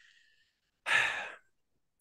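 A man drawing one short breath through the mouth between phrases of speech, about a second in.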